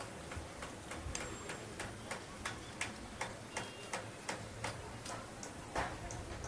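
Faint, regular ticking, about three short clicks a second, with a few thin high chirps among them.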